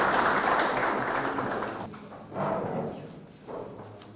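An audience applauding, the clapping thinning and dying away about two seconds in, followed by two brief, quieter sounds.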